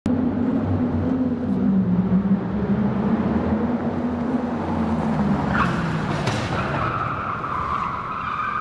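Sound effect of a channel intro: a loud, steady low drone with a pitch that shifts in steps, joined about five and a half seconds in by a quick rise into a held high squeal.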